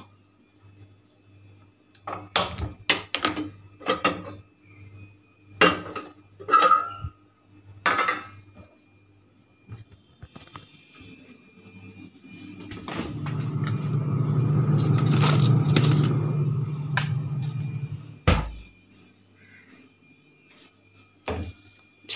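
Kitchen handling noises: a series of separate clicks and knocks from the gas stove and utensils, then a rushing noise that swells and fades over about five seconds, and a single thump near the end.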